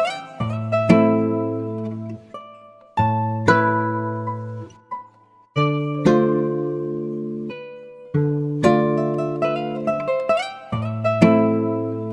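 Music: a slow, guitar-led instrumental with plucked chords struck about every two and a half seconds, each left to ring and fade, with single picked notes between them.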